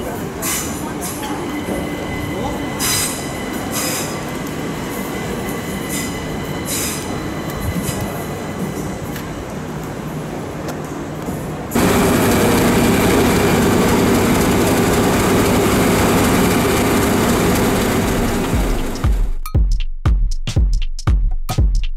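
Electric multiple-unit train moving along the platform, a steady faint whine under a general rumble, with a few sharp clicks. About two-thirds in, the sound cuts abruptly to a much louder steady noise. Electronic music with a beat starts near the end.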